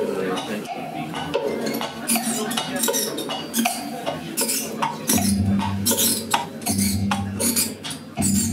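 Amplified small objects scraped, rubbed and clinked in improvised noise music, with squealing metallic scrapes among the clicks. About five seconds in, a low steady hum comes in and breaks off briefly twice.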